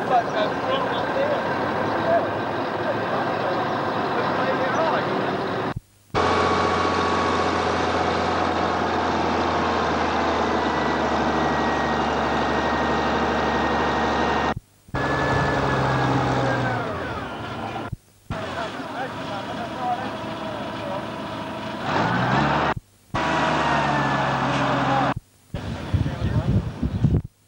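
Heavy diesel machinery running: a truck and a front-end loader working at a steady low hum, broken by several short silent gaps where the recording cuts. Voices may be mixed in.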